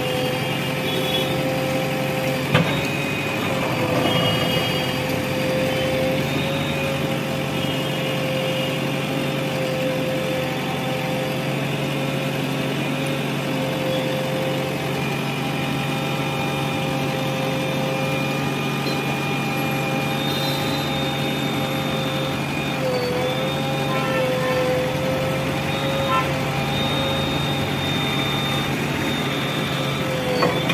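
JCB 3DX backhoe loader's diesel engine running steadily under work, with a steady whine over it that dips briefly in pitch near the end. A single sharp knock comes about two and a half seconds in.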